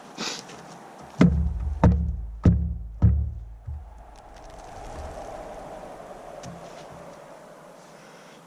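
Four heavy wooden thuds about 0.6 s apart, from hatchet blows on an upright log in a shelter wall, then one fainter knock.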